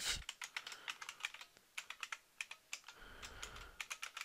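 Typing on a computer keyboard: a quick, irregular run of keystroke clicks, entering code.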